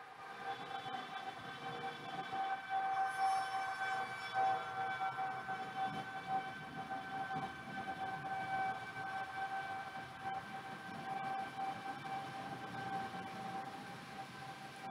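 A faint, steady pitched tone with several overtones, held without a break over low background noise.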